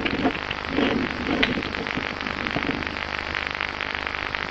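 Computer keyboard being typed on in short irregular clicks, over a steady hum and hiss, with brief muffled voices in the background.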